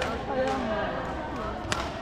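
Badminton rackets striking a shuttlecock: a couple of sharp, crisp hits, the loudest near the end. They sound over a steady background of many voices chattering in a large sports hall.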